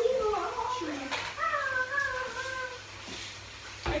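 A high-pitched voice making drawn-out, wavering calls, ending in a short "ha" of laughter near the end.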